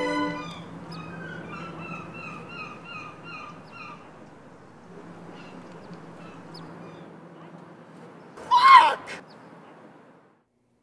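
Lake ambience: faint rapid chirping of a small bird for the first few seconds over a low steady hum, then one loud honk of a waterfowl, such as a goose, about eight and a half seconds in.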